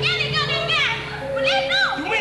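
Many high-pitched voices, children's among them, calling out in quick rising-and-falling shouts over steady music with a held note.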